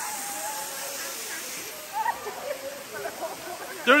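Waterfall pouring onto rocks: a steady rushing hiss that is strongest for the first second and a half, then softer, with faint distant voices about halfway in.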